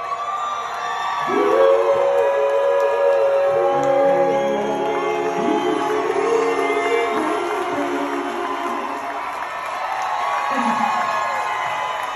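A live soul band holds a final sustained note, with a singer's wavering held note over it. The audience then cheers and whoops as the music fades.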